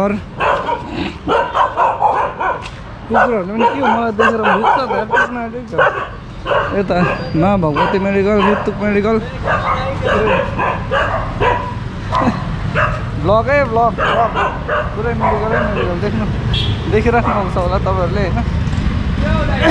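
A dog barking and yipping again and again in short, high, rising-and-falling calls, with voices around it.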